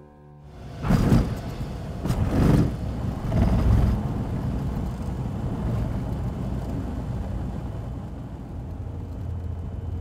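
Soft music breaks off, then a loud low rumble like a running engine, with several loud rushes of noise in the first few seconds before it settles into a steady drone.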